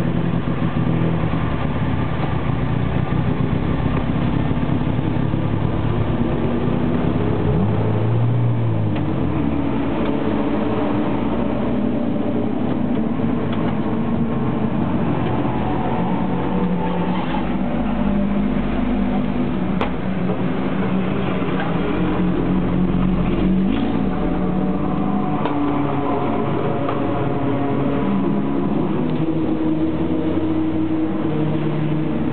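Classic racing car's engine heard from inside its cabin, running as the car moves off, its pitch rising and falling several times with the throttle.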